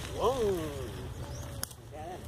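A person's voice: one drawn-out call that rises briefly and then falls in pitch, over a steady low rumble of wind on the microphone while riding, with a sharp click near the end.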